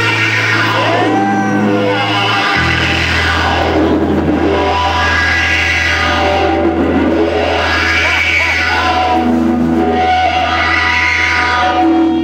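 Live rock band playing loud on electric guitars, bass and drums through amplifiers, with notes that bend and glide in pitch near the start and the bass moving down to a lower held note a couple of seconds in.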